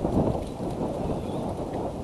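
Wind buffeting an outdoor nest-camera microphone, a low rumble with a stronger gust just after the start.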